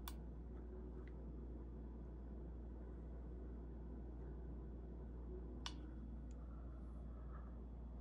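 Quiet room tone with a steady low hum, broken by one faint sharp click a little past halfway and a softer one just after.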